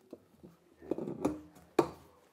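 A few short knocks and rustles of handling, with a sharp, loudest knock near the end.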